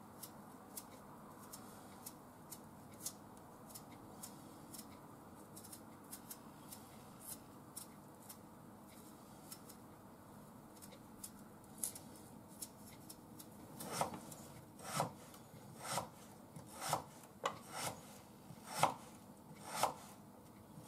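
A kitchen knife peeling a potato by hand, with faint scraping and small clicks. From about two-thirds of the way through, the knife slices the peeled potato on a cutting board, knocking on the board roughly once a second.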